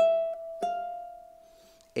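Tenor ukulele fingerpicked: a note plucked at the start, two softer notes just after, then the last note left ringing and slowly fading. It is a short melody played on fret 5 within a D minor chord shape.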